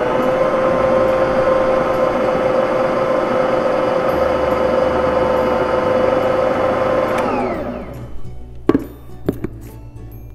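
Electric stand mixer running its dough hook through bread dough as flour is mixed in, a steady motor whine that is switched off about seven seconds in and winds down. A couple of sharp knocks follow near the end.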